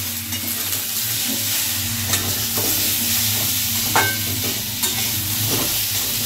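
Vegetable chunks sizzling in mustard oil in a metal kadai while being stirred with a metal spatula, with a few scrapes and knocks of the spatula against the pan. The vegetables are being lightly fried. A steady low hum runs underneath.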